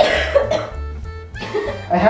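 Background music with a steady, repeating bass beat. Over it, a person gives a short cough-like vocal burst at the start and another near the end.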